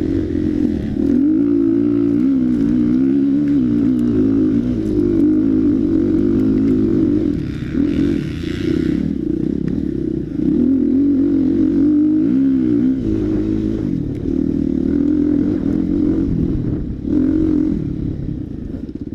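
Dirt bike engine heard from on board, revving up and down continually as it is ridden along a rough trail, with several short dips in pitch and level as the throttle is eased.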